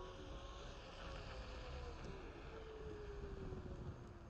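Onewheel V1 hub motor whining as the board rolls, the pitch falling slowly as it loses speed, over a low rumble of wind and tyre noise on asphalt.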